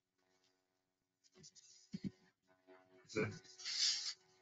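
Quiet room tone with a couple of faint computer mouse clicks about two seconds in, then a brief murmur of a voice and a breathy hiss near the end.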